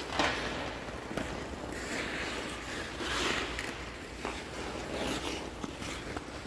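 Skate blades scraping and shuffling on ice with rustling of goalie gear, a few short swells of scraping noise, over a steady low hum.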